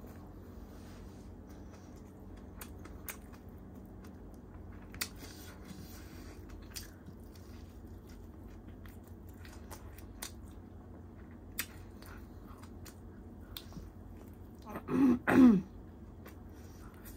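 Eating sounds as tandoori chicken is bitten and chewed by hand: faint, scattered wet mouth clicks and smacks. About a second before the end come two short, loud vocal bursts from the eater, like a cough or a clearing of the throat.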